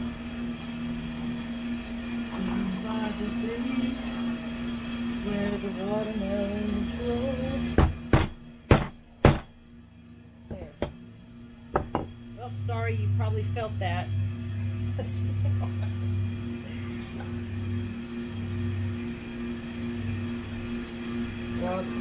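Small mallet striking a bolt set in a wooden plank: four sharp knocks in quick succession about eight seconds in, then a few lighter taps a couple of seconds later, with a song playing in the background.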